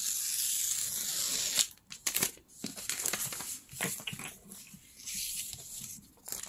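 Sheets of craft paper torn and handled by hand: one long rasping tear, scattered crinkles and rustles, then a second shorter rasp near the end.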